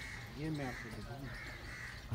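Several faint, hoarse crow caws, with a faint voice underneath about half a second in.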